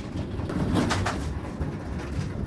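Swivel casters of a heavy laser-cutter cabinet rolling over a rough concrete floor as it is pushed, a low uneven rumble with a faint knock about three-quarters of a second in.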